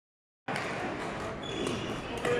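Reverberant sports-hall noise during a badminton doubles rally, starting about half a second in, with a sharp racket-on-shuttlecock hit about one and a half seconds in and a brief shoe squeak just before it.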